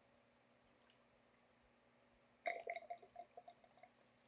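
Graco Pump Armor storage fluid glugging out of its plastic bottle into an airless sprayer's suction tube: a short run of uneven gulps, about two and a half seconds in, lasting about a second and a half.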